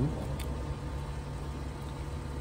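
Steady low hum of an idling engine, with one faint click of small metal lock parts being handled about half a second in.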